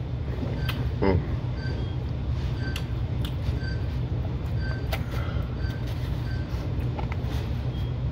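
Steady low machine hum in a back room, with a brief 'mm' about a second in and small chewing and plastic-fork clicks from eating out of a foam takeout container. A faint short beep repeats about once a second.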